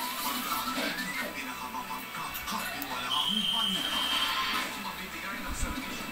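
Background television audio: voices and music, with a steady high tone held for about a second midway.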